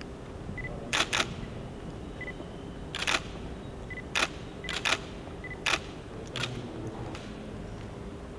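Camera shutters clicking, about eight sharp clicks over several seconds, some in quick pairs, with faint short high-pitched beeps between them.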